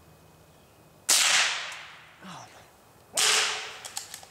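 Two gunshots about two seconds apart, each a sharp crack that fades away over most of a second.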